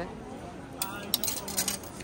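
A coin slipping off the bronze boar's snout and dropping onto the metal grate below, clinking several times in quick succession over about a second, starting a little before halfway in.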